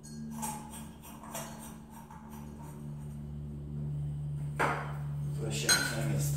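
Light bulbs being handled and screwed into the sockets of a ceiling-fan light kit: small glass-and-metal clicks, then two louder knocks near the end, over a steady low hum.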